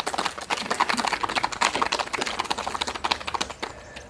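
A small audience clapping: a dense patter of hand claps that starts suddenly and dies away just before the end.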